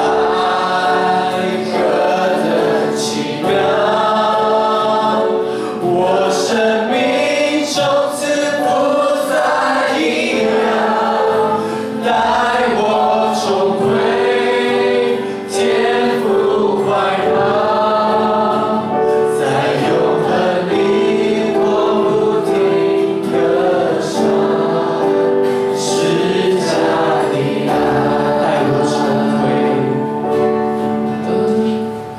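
A congregation singing a Chinese worship song together, led by a singer on a microphone, with a worship band that includes an acoustic guitar playing sustained chords under the voices.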